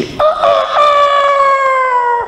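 A man imitating a rooster's crow with his voice, high-pitched: two short notes, then one long held note that falls slightly in pitch.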